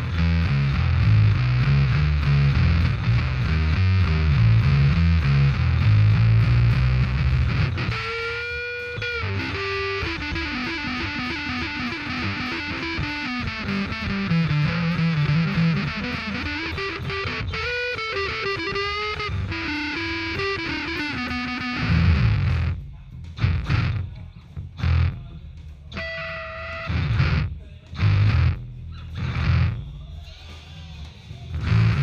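Bass VI six-string bass played through a fuzz pedal. It opens with a bouncing rock-and-roll bass line, then about a third of the way in moves to a high lead line of sliding, bending notes. In the last stretch it breaks into short, choppy stabs with gaps between them.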